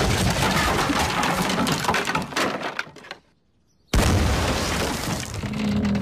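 Cartoon destruction sound effects of a house breaking apart: loud cracking and breaking that fades out after about three seconds, a moment of silence, then a sudden loud crash of smashing and breaking.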